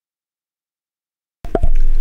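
Complete silence, with the soundtrack cut out, for about the first second and a half, then the sound cuts in abruptly with a sharp click just before a man starts talking.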